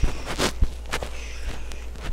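A few scattered clicks and knocks with a short noisy rustle at the start, over a steady low hum.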